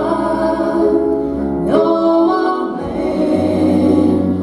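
Two women singing a gospel song in harmony, with live piano and guitar accompaniment; a new sung phrase begins about halfway through, and a low bass note comes in near the end.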